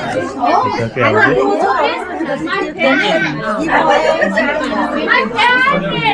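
Several people talking over one another: a steady hubbub of overlapping voices.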